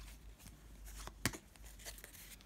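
Faint handling of a stack of trading cards in the hands: a few soft clicks and light rustles as the cards slide against each other, the loudest about a second and a quarter in.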